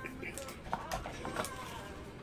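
Light clicks and taps from trading cards being handled, with brief faint snatches of voice.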